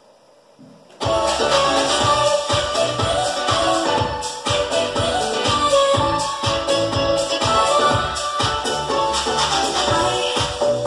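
Music with a steady beat playing through a stereo pair of DIY flat-panel speakers, one a balsa panel and one a polystyrene panel, starting abruptly about a second in.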